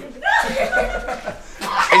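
A person chuckling for about a second, with voices around.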